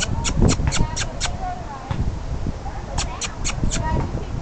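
Background voices with two quick runs of sharp clicks, about four a second: six near the start and four more about three seconds in.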